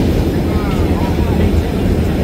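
Vintage New York City subway train running at speed through a tunnel, heard from inside the car: a steady, loud low rumble of wheels on rail and car body, with faint short higher-pitched sounds above it.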